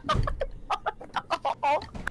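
A person laughing helplessly in a rapid run of short, clipped bursts, several a second.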